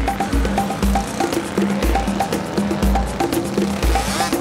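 Background music with a steady beat of bass, short pitched notes and percussion.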